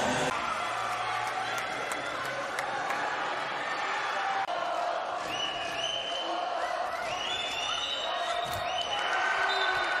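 Indoor handball arena crowd noise with the ball bouncing on the court. From about halfway, several long held tones join in, stepping up in pitch.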